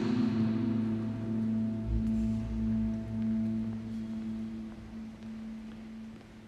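A single low musical tone, held and ringing, that fades slowly as the music before it ends.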